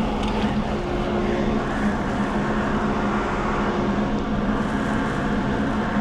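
Shop dust-collection vacuum running with a steady hum and rush of air, drawing through a four-inch flexible hose to suck up sawdust from the floor.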